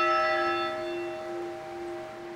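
A single stroke of the Keene Valley Congregational Church's steeple bell, its tone ringing on and slowly fading, the higher overtones dying away first. The bell is being tolled once for each thousand people dead of COVID-19 in the U.S.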